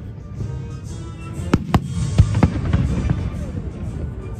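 Aerial fireworks shells bursting, with a run of sharp bangs from about a second and a half in, over a low, continuous rumble of booms. Music plays at the same time.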